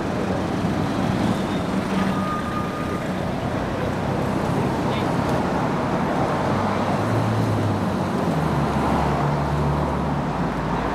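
City street traffic: a steady noise of passing motor vehicles, with a low engine rumble growing heavier over the last few seconds.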